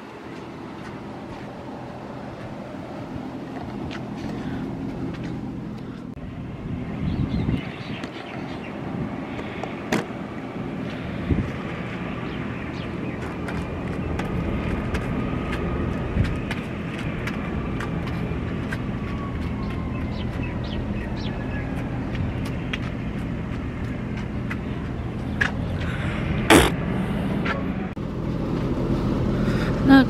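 An engine running steadily with a low hum. Through the middle a faint whine slides slowly down in pitch, and there are scattered light clicks, with one sharp knock a few seconds before the end.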